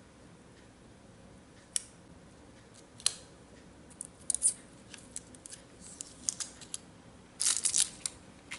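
A metal weeding pick picking and peeling pieces of adhesive-backed foil off its paper liner: scattered sharp ticks and small crinkles, coming more often from about halfway and ending in a denser burst of crackling near the end.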